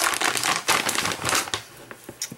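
Plastic snack bag of trail mix crinkling as it is handled and set down, dying away after about a second and a half.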